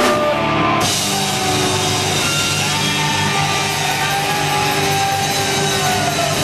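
Live punk rock band playing loud: distorted electric guitar, bass and drum kit, with no singing.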